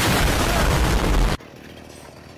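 Loud explosion sound effect: a burst of noise lasting about a second and a half that cuts off suddenly.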